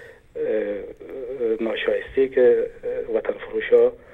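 Speech only: a person talking steadily in Dari, sounding thin and narrow like a voice coming in over a telephone line.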